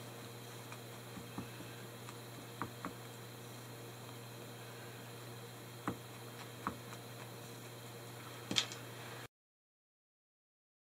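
Felting needle stabbing blue wool against a bristle-brush felting mat: a scattering of soft, irregular clicks, the loudest near the end, over a steady low hum. The sound cuts off abruptly shortly before the end.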